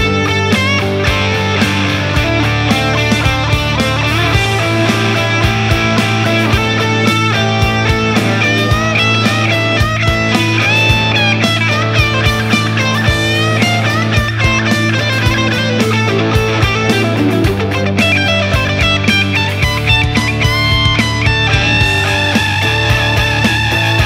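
Gibson USA SG Standard electric guitar playing quick lead runs through an amp, over a rock backing track with drums and bass.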